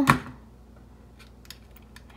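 Quiet room tone with a few faint, light clicks and taps from about a second in onward, as hands handle a folded paper fortune cookie.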